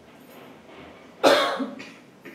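A man coughs sharply once about a second in, followed at once by a smaller cough, into a close microphone.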